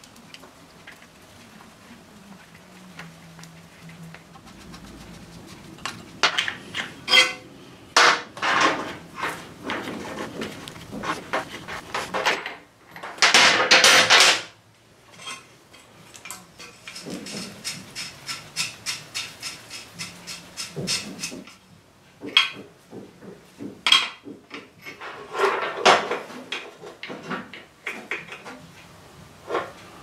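Metal clinks, taps and scrapes of aluminium hose fittings, a union and tools being handled while braided oil-cooler hoses are fitted to a motorcycle engine, with a louder rasping stretch of a second or so about halfway through.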